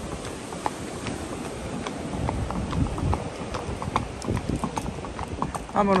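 Hooves of a ridden horse clip-clopping along a path, a few uneven beats a second.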